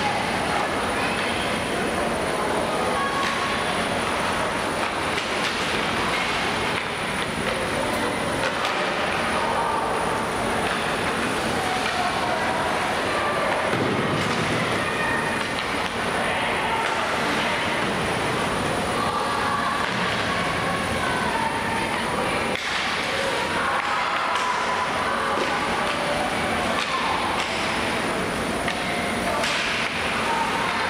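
Ice rink sound during hockey play: a steady wash of skates scraping and carving the ice, with faint players' calls mixed in, in a large hard-walled arena.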